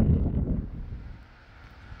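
Wind buffeting the microphone: a low rumble that dies away about halfway through.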